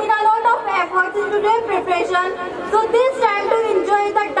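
A girl's voice speaking into a podium microphone, amplified and steady throughout.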